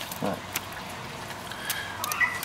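A short voiced 'uh' from a man about a quarter second in, then faint background noise with a low steady hum and a few light clicks.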